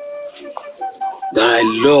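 Crickets chirring in one steady, high, unbroken band.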